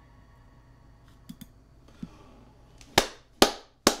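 Quiet room tone with a few faint ticks, then three sharp clicks about half a second apart near the end.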